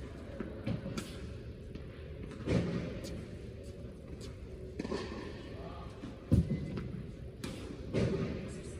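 Tennis balls struck by racquets and bouncing on an indoor hard court during a backhand slice drill: a series of short, sharp knocks a second or so apart, the loudest about six seconds in, heard in a large tennis hall.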